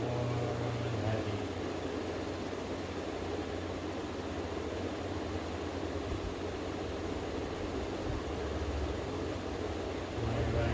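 Steady hiss of room noise with a low hum, typical of ceiling fans running.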